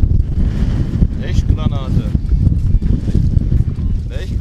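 Strong wind buffeting the microphone: a loud, uneven low rumble throughout, with a faint voice partway through.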